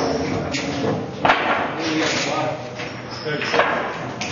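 Voices chattering in a pool hall, with several sharp clicks of pool balls striking one another.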